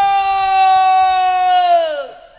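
A man's voice through a stage microphone and PA, holding one long high note in a drawn-out yell. It slides down in pitch and stops just before the end.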